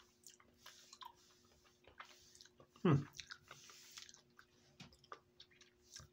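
Close-up chewing and small mouth clicks of a person eating a spoonful of rice and noodles, with a short hummed "hmm" about three seconds in.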